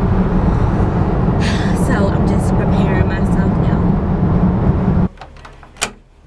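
Steady low road rumble inside a moving car's cabin, which cuts off sharply about five seconds in. It gives way to a quiet room, where a single sharp click from a wooden door sounds near the end.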